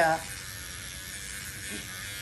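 Electric microneedling pen buzzing steadily as it is worked lightly over the skin under the eye.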